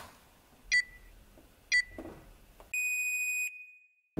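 Digital countdown timer on a prop bomb beeping: two short high beeps one second apart, then one longer steady beep lasting just under a second.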